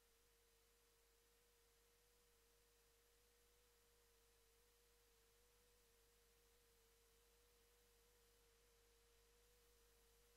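Near silence, with only a very faint steady tone held at one pitch throughout.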